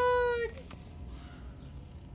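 A woman's high, drawn-out word in a cooing voice, held on one pitch and ending about half a second in, then quiet room tone.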